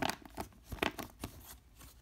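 Thin-walled 'eco' Blu-ray case, its plastic creaking and clicking as it is bent and squeezed by hand: a string of light, separate clicks about every half second.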